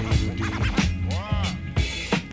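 Hip hop beat playing from vinyl, with record-scratch sweeps rising and falling in pitch over it, the clearest about a second in.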